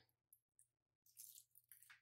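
Near silence: a couple of tiny clicks, then soft, faint rustling as small items are handled, over a low room hum.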